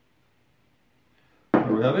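Near silence for about a second and a half, then a man's voice starting to speak near the end.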